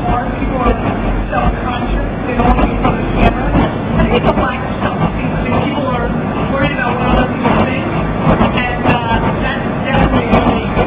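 A man talking over a loud, steady room din with a heavy low rumble, heard through a phone's small microphone.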